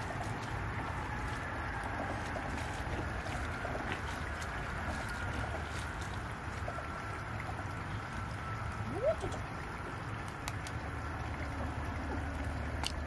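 Steady outdoor ambience with a low rumble and a soft trickling hiss of shallow running water, with a short rising squeak about nine seconds in.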